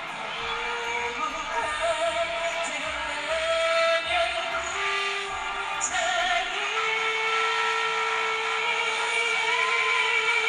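A woman singing a slow pop ballad live with backing music, settling into a long held note in the second half.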